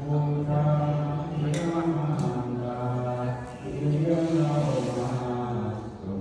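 A Buddhist monk chanting Pali verses in a low, steady voice of long held notes that change pitch slowly. Two short clicks sound about a second and a half and two seconds in.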